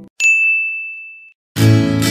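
A single bright ding: a bell-like chime struck once, ringing on one high tone for about a second as it fades. Acoustic guitar music starts near the end.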